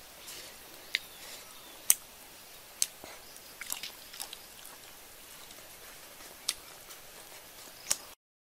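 A person biting and chewing rock-grilled squid: faint mouth sounds with a handful of sharp clicks about a second apart.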